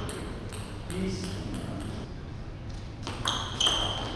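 A table tennis ball is struck by the bats and bounces on the table in a rally. It makes a quick series of sharp clicks, each with a short ringing ping, starting about three seconds in after a quiet lull.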